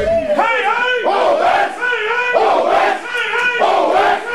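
A group of voices chanting together in a repeated, rhythmic call, about one phrase every second and a quarter, with the music's bass dropped out.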